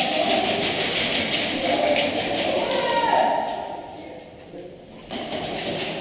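Indistinct voices calling out in a large, echoing hall, dropping away for a second or two past the middle before picking up again.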